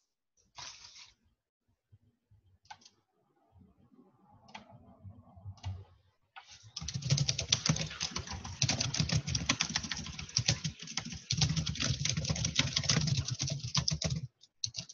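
Typing on a computer keyboard: a few separate key clicks at first, then fast, continuous typing from about halfway through.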